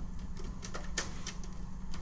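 Plastic and sheet-metal parts of an old Dell desktop computer case clicking and knocking as its side panel is pried open by hand, with a run of sharp clicks mostly in the second half.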